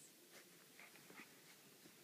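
Near silence with a few faint soft ticks, about two a second, from Goldendoodle puppies stirring and mouthing a blanket.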